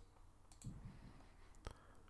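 A few faint computer mouse clicks over near silence, the sharpest about one and a half seconds in.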